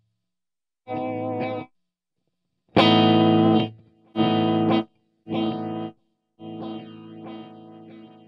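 Carvin HF2 Fatboy electric guitar played through a Strymon DIG dual digital delay, its mix controlled by an expression pedal: a string of short chords separated by gaps of silence, the loudest just under three seconds in, then a softer chord left to ring and fade near the end.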